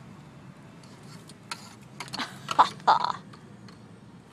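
Steady low hum of a car interior while driving, with a cluster of short, loud vocal sounds about halfway through: grunts or groans rather than words.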